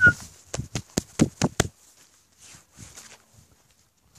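A quick run of about seven sharp clicks in the first two seconds, then a few faint scuffs.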